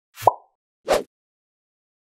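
Two short sounds in otherwise dead silence: a plop with a quick rising pitch about a quarter second in, then a brief noisy burst about a second in.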